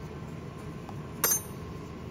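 A single short metallic clink about a second in, metal tool against metal hardware, ringing briefly at high pitch.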